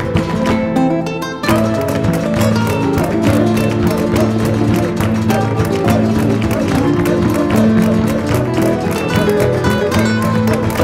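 Background music: plucked acoustic guitar in a flamenco style, with a brief break and change of passage about a second and a half in.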